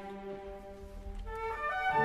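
Opera orchestra playing softly with long held notes, swelling with new higher notes entering near the end.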